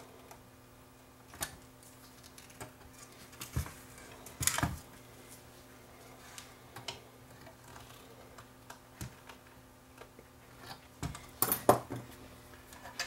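Irregular clicks and taps of small metal hand tools, needle-nose pliers, handled against the amplifier chassis and bench while a replacement switch is wired in, with the loudest cluster of clicks just before the end. A faint steady hum runs underneath.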